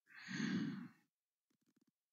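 A single breathy sigh, an exhale close to a desk microphone, lasting just under a second.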